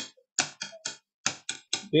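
Hands tapping on a tabletop used as a drum, playing the contragalopa rhythm (two sixteenth notes then an eighth) against a steady pulse: two quick groups of sharp taps.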